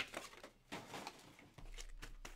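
Sports card box and foil packs being handled: a sharp tap right at the start, then light rustling and crinkling of the packaging with a few small ticks.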